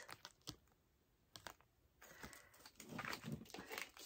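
Faint handling of photo cards: a few light clicks and rustles, most of them in the first second and a half, over quiet room tone.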